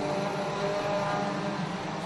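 Four-cylinder mini stock race cars' engines running at speed around the track, a steady engine drone.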